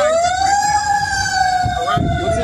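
An emergency vehicle siren wailing. Its pitch sinks slowly, sweeps up sharply at the start, then sinks slowly again.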